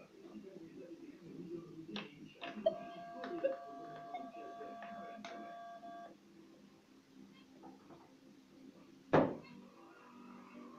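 Metal detector control box giving a steady electronic beep tone for about three and a half seconds, which cuts off suddenly, with small clicks of a headphone jack adapter being handled and plugged in just before it. A sharp click near the end.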